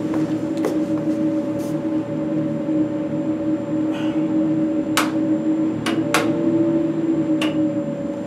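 Fume hood exhaust blower running with a steady droning hum. A few sharp clicks and taps sound over it, the clearest about five and six seconds in.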